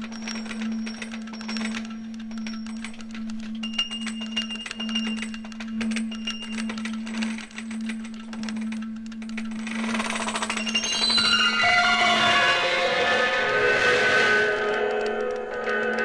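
Music played from a 1972 vinyl LP: a steady low drone under scattered high held tones and many small clicks, swelling after about ten seconds into a dense, louder mass of tones.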